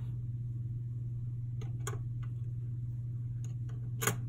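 Steady low hum with a few faint, spaced clicks as small metal story pieces are moved and set down on a wooden board.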